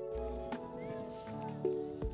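Soft background music of sustained, held notes that shift in pitch every half second or so.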